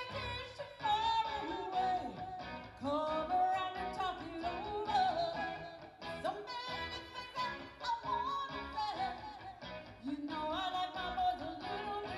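Live pop-rock band playing a song: a sung lead vocal over guitar and keyboards with a steady beat.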